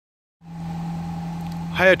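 A steady idling hum with a constant low tone, starting about half a second in and running on unchanged, typical of a car engine idling.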